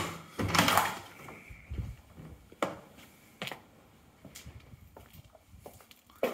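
A uPVC back door being unlocked and opened: a sharp clunk of the lock and handle at the start, a short rustling swish as the door swings open, then a few lighter knocks.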